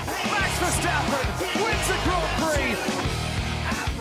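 Hard rock music, loud and steady, with distorted electric guitar and drums; a passage between the sung lines.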